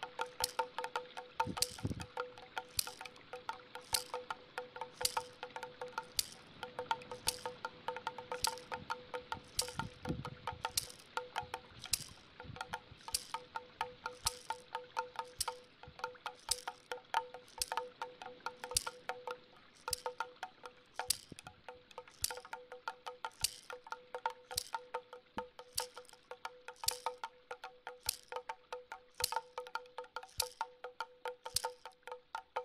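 Meditation music of bell-like chimes struck in a quick, irregular patter, each strike ringing briefly, over a steady held tone.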